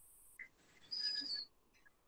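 A short high chirp about a second in, lasting about half a second and dipping in pitch at its end, heard over a faint line hiss.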